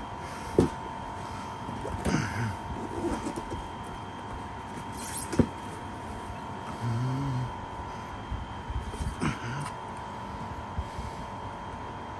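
Box and packaging being handled: scattered knocks, taps and rustles, the sharpest about half a second in and again about five seconds later, over a steady faint high whine.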